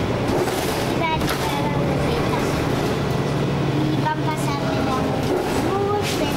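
Steady low drone of a moving passenger vehicle heard from inside its cabin, with people's voices talking in the background.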